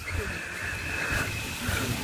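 Soft rustling of gloved hands working loose soil, under a low wind rumble on the microphone and a faint steady high tone.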